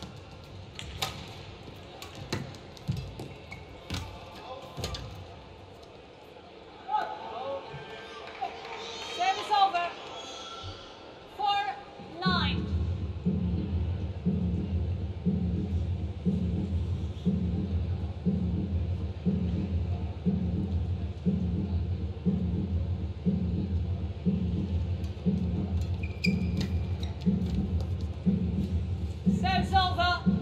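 Badminton rally: sharp racket hits on the shuttlecock and shoe squeaks on the court. From about twelve seconds in, arena music with a steady low beat, a little over one beat a second, fills the hall.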